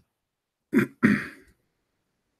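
A man clearing his throat in two short, harsh bursts, a little under a second in.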